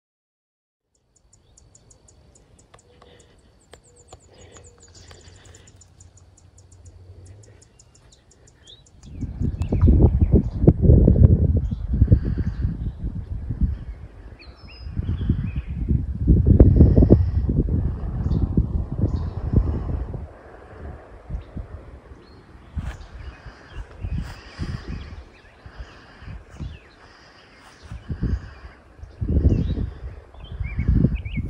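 Wind gusting across the microphone in loud, low, uneven rushes from about nine seconds in. Before that, in the quieter first part, birds chirp in a rapid high trill.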